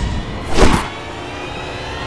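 A short, sharp whoosh sound effect about half a second in, followed by a quieter stretch of background score.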